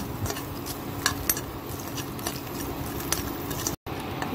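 Steel spoon stirring fox nuts (makhana) in a nonstick kadhai with a little ghee, giving scattered light clinks and scrapes as they are lightly roasted, over a steady low hum. The sound cuts out briefly near the end.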